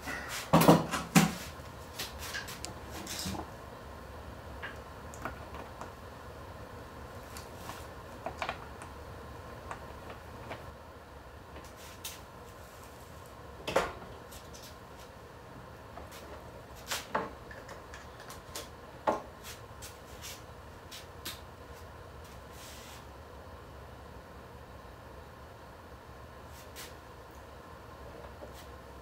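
Battery being swapped and its cables reconnected: a cluster of clunks and clicks at the start, then scattered single knocks and clicks, over a faint steady low hum.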